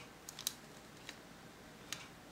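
A few light, sharp clicks and taps as a hand handles a vintage Kenner Bionic Man plastic action figure, the loudest about half a second in.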